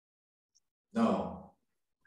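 A man's single drawn-out, dismayed 'no', sigh-like and fading away, about a second in, after dead silence. It is a reaction to a video-call connection freezing.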